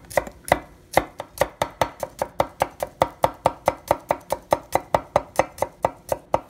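Chef's knife slicing a garlic clove paper-thin on a wooden cutting board: a quick, even run of blade taps on the board, a little slower in the first second, then about five a second.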